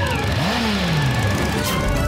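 Cartoon soundtrack engine, twice revving up and dying away, with background music underneath that carries on as the second rev fades.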